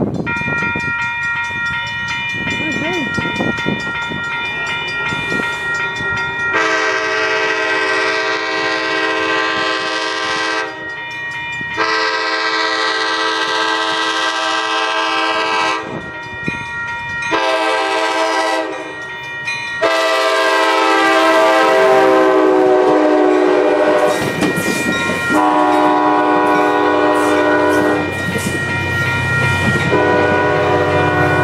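ACE commuter train's multi-note air horn sounding the grade-crossing signal: two long blasts, a short one, then a long one that drops in pitch as the train passes. Before the horn a railroad crossing bell rings steadily.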